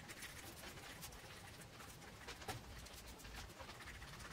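Faint scattered clicks and scrapes of a metal fork stirring beaten egg into flour on a stone countertop, the egg and flour slowly combining into a dough.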